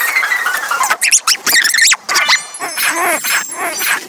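Cartoon soundtrack sped up four times, so its voices, music and effects come out as rapid, high-pitched squeaky chatter with quick pitch swoops.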